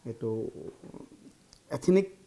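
A man speaking: two short stretches of talk with a quiet pause between them.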